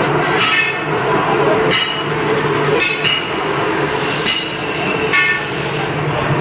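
Automatic batasa (sugar-drop candy) machine running: a steady mechanical hum with a sharp metallic clank roughly once a second, each followed by a brief ring.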